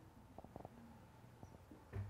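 Near silence: room tone in a hall, with a few faint soft clicks.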